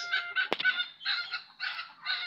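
Backyard poultry calling in a rapid run of short, repeated calls, several a second. A single sharp click sounds about half a second in.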